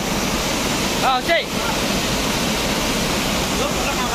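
Small waterfall pouring over rock, a steady rush of water. A brief vocal call cuts in about a second in.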